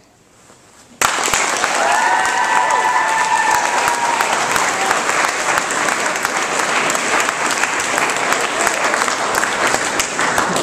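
Audience clapping, starting suddenly about a second in and going on steadily, with a voice or two cheering over it about two seconds in.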